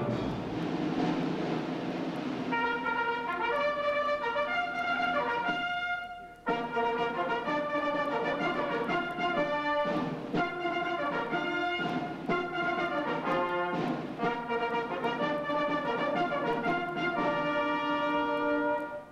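Military wind band playing: brass and saxophones in sustained chords, with a brief break about six seconds in before the full band comes back in.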